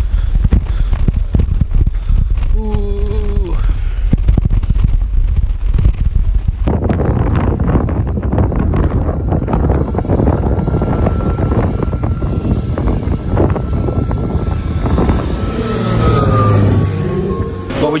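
Wind buffeting the microphone while riding a bike, then after a cut a small plane flying low overhead: a steady engine drone that swells and drops in pitch as it passes, shortly before the end.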